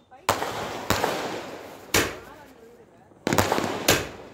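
Multi-shot fireworks cake (fireshot) firing in quick succession: five loud bangs in under four seconds, each followed by a fading hiss.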